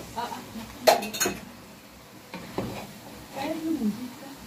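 Wooden spoon stirring chunks of chicken and vegetables in a metal cooking pot, with two sharp knocks of the spoon against the pot about a second in.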